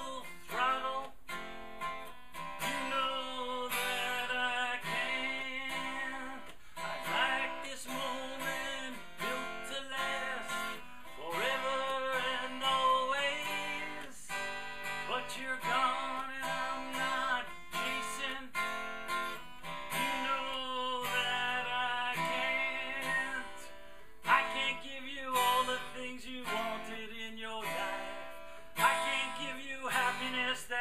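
A man singing while strumming chords on a cutaway acoustic guitar, with the voice carrying the melody over steady strumming.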